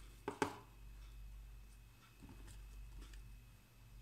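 Faint kitchen handling sounds while apple slices are set into cake batter in a glass baking dish: two sharp clicks a fraction of a second in, then a few light taps.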